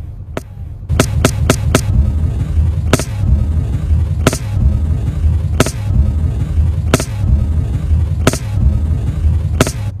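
Sharp gunshot pops on a phone recording: a quick burst of about five about a second in, then single shots about every second and a half. A loud low rumble runs under them.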